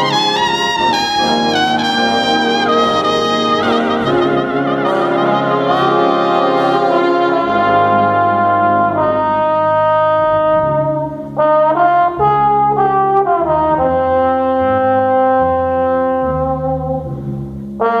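Big band playing a slow ballad. A solo trumpet leads at the start over the brass and rhythm section. About halfway through, a trombone takes over the melody with long held notes over the band.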